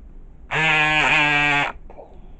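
A person's voice holding one long vocal tone for about a second, dipping briefly in pitch halfway through.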